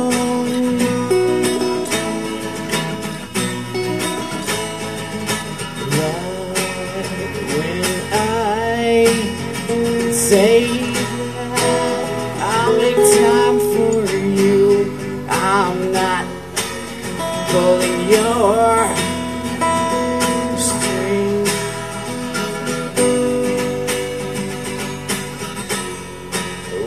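Acoustic guitar music played live: guitar chords held under a wavering, bending lead melody line.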